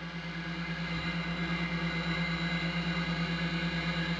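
Steady fan hum from the Soyuz ASU toilet with its air suction running, mixed with the spacecraft cabin's ventilation: a low drone that pulses quickly and evenly, with several faint fixed whines above it.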